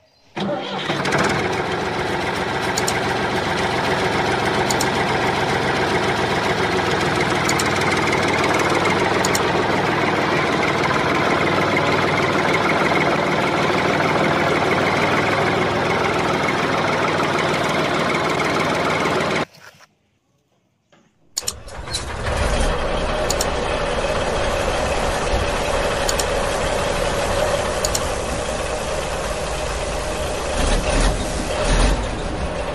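Vehicle engine sound effect running steadily. It cuts off about 19 seconds in, leaving two seconds of silence, and then a second engine recording starts and runs on.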